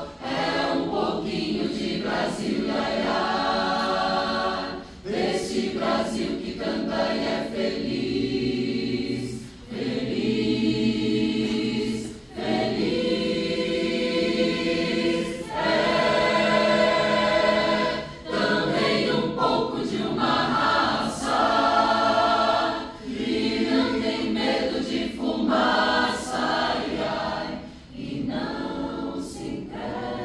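Mixed choir of men's and women's voices singing, in phrases separated by brief breaths every few seconds.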